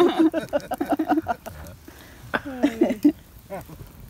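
People laughing at the punchline of a story, in two bouts of voiced laughter with a short lull between them.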